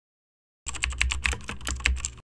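Computer keyboard typing sound effect: a quick run of key clicks that begins under a second in and lasts about a second and a half.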